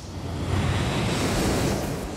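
A whoosh-and-rumble transition sound effect for an animated logo: a swell of rushing noise with a deep rumble beneath, building up about half a second in and then holding steady.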